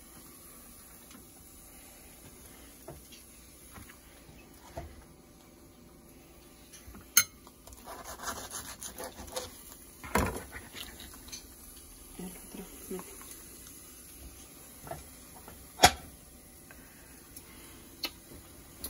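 Kitchen handling sounds: a knife sawing through a flour-tortilla burrito on a plastic cutting board in a short run of scraping strokes, and a few sharp knocks of knife and plates against the board, the loudest near the end.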